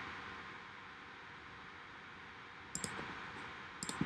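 Faint computer mouse clicks, a couple about three quarters of the way in and another pair near the end, over a steady low hiss.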